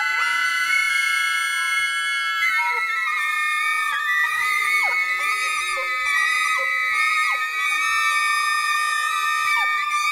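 Large ensemble of woodwinds, soprano saxophones and flutes among them, holding a dense cluster of high sustained notes with no bass underneath. From about four seconds in, repeated falling glissandi slide down through the held chord.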